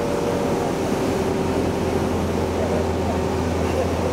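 City bus engine running steadily close by, a low, even hum with a steady drone.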